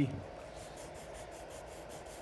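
Heavy paper sliding and rubbing between a Creality Ender 2 3D printer's nozzle and its metal bed, a faint papery scraping: the paper feeler test of the nozzle-to-bed gap during bed leveling.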